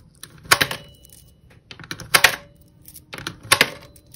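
Pennies pushed one at a time through the slot of a digital coin-counting jar, each dropping in with a sharp metallic click and a brief ring. Three coins go in, about a second and a half apart.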